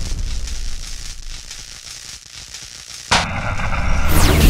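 Logo-animation sound effects: a low, noisy rumble dying away, then a sudden loud impact hit about three seconds in that rings on.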